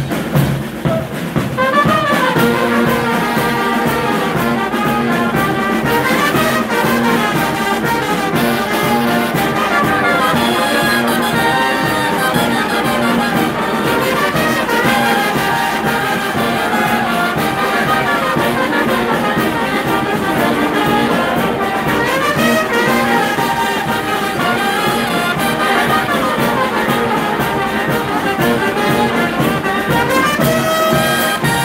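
A brass band of trumpets, flugelhorns and saxophones, with a clarinet, playing a tune together, the full band coming in about two seconds in and then playing steadily loud.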